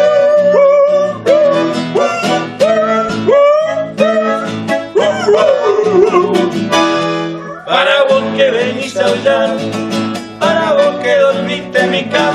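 Nylon-string acoustic guitar and bandoneon playing a lively folk-style song, with a man singing over them and scooping up into his notes. The accompaniment grows fuller and brighter about eight seconds in.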